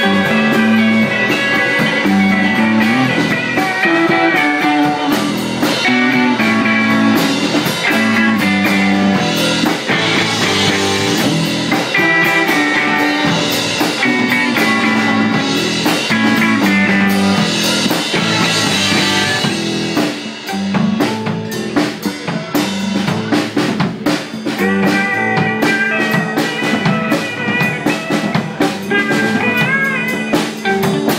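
Live rock band playing an instrumental passage: electric guitar over a drum kit with dense drumming. The level dips about two-thirds of the way in, leaving the drum hits more to the fore.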